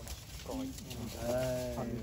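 A man's voice speaking Vietnamese: a short word, then one long drawn-out vowel held on a steady low pitch.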